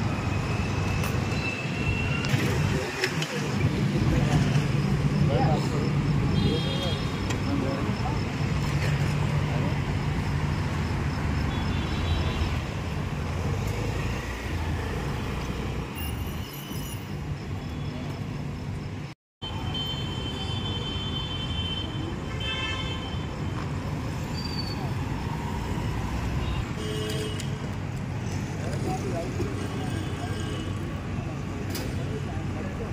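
Road traffic at a busy street checkpoint: a steady rumble of motorbike and auto-rickshaw engines with people talking and a few short horn toots. The sound cuts out briefly about two-thirds of the way through.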